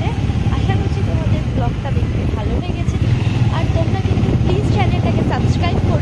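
Steady low engine drone and wind rumble on the microphone while riding on a motorbike, with voices talking over it.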